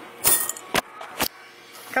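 Coins (quarters) clinking: three sharp metallic clicks about half a second apart.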